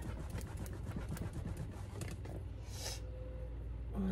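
A cloth rubbed over a leather handbag to lift small spots: soft, quick scrubbing strokes, with one brighter swipe near the end, over a steady low room hum.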